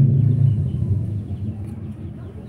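Low rumble of breath blown out close to the microphone, exhaling a vape hit from a pod device; it is loudest at the start and fades away over about a second and a half.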